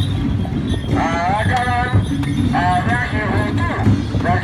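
Street procession din: a dense low rumble with rapid knocking, and two bursts of high, wavering calls over it, about a second in and again near three seconds.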